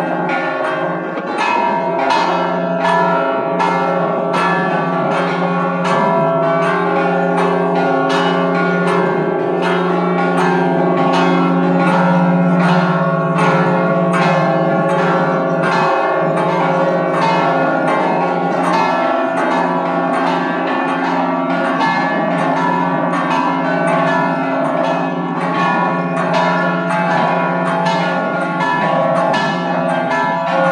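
A peal of five church bells swung together in full peal. Their overlapping strikes of several pitches come at roughly one and a half to two a second, over the deep steady hum of the largest bell.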